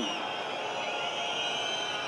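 Low murmur of a tennis crowd in the stands, a steady hubbub of scattered voices.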